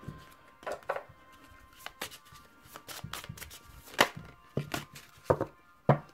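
Tarot cards being handled and laid down on a table: a string of irregular sharp taps and slaps, about ten in six seconds, the loudest about four seconds in and near the end. Soft background music plays underneath.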